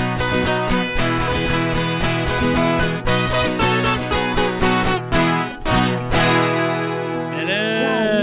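Two violas caipiras strummed and plucked in a brisk sertanejo raiz instrumental, stopping on a final chord that rings on about six seconds in. A voice calls out near the end.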